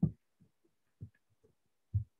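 Computer keyboard being typed on, heard as a handful of short, dull, low thuds about half a second apart, the loudest near the end.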